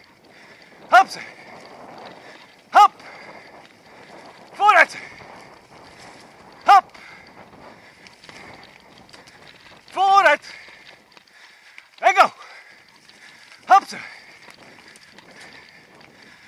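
A rider's short shouted calls to a running dog, seven in all, about one every two seconds, over the steady hiss of bicycle tyres and wind on a dirt trail.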